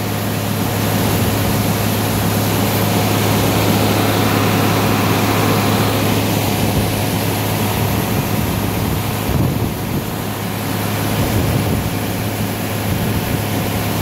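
Steady, loud machinery drone of a grain auger and fan running while dry shelled corn drains out of a hopper-bottom trailer into the auger, with a constant low hum under an even rushing noise.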